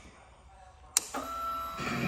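2013 Victory Cross Country motorcycle being readied to start: a single sharp click about a second in, followed by a faint steady electrical whine.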